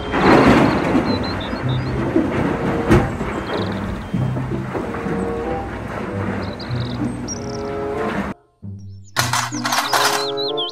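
Background music over a rough rushing noise that is loudest in the first second: a wheel loader's bucket of coal pouring into a dump truck's bed. It all cuts off suddenly about eight seconds in, and a chirping tune follows.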